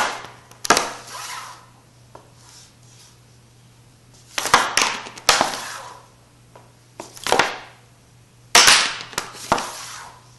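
Hockey stick blade and puck striking a hard floor surface: sharp cracks and clacks in small groups every few seconds, each with a brief scrape, as the puck is flipped up with the toe of the stick and lands again.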